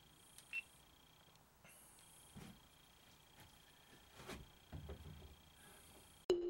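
Near silence, broken about half a second in by one short high electronic beep. Then come a few faint clicks and knocks of a GoPro action camera being handled and set on a small tripod.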